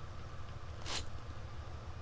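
Bedini pulse motor running: a steady low hum with an even flutter from its spinning rotor and pulsed coils. A brief soft hiss comes a little before halfway.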